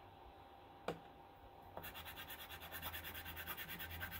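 A single sharp tap about a second in, then water-dipped sidewalk chalk scribbling on printer paper in quick back-and-forth strokes, about seven a second, colouring in a square.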